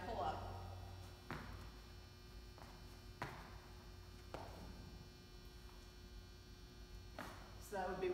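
A few scattered dull knocks and thuds of a burpee and pull-up being done on a rubber gym floor at a pull-up rig, four in all, the loudest a little past a third of the way through. A steady low hum runs underneath.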